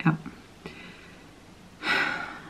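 A woman says a short "ja", then, near the end, takes an audible sharp breath in.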